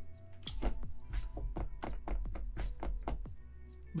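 Computer keyboard typing: a quick, irregular run of keystroke clicks that stops shortly before the end, over faint background music.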